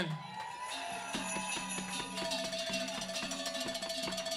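Jingle bells shaken in a steady rhythm, with soft held notes from the band's instruments underneath; a second, higher held note comes in about halfway through.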